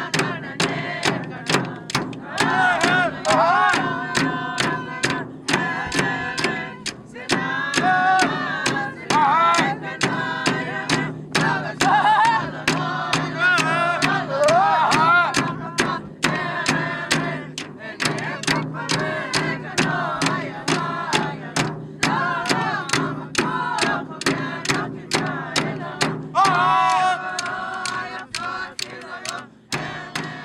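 Inuvialuit drum dance song: a group of voices singing together over a steady beat of large hand-held frame drums struck with sticks, about two beats a second.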